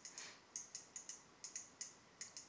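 Light, rapid mechanical ticking from a low-end spinning reel turned by hand with its spool off, about four ticks a second.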